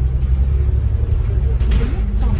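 Steady low rumble of a Kowloon Motor Bus on the move, heard from inside the passenger cabin.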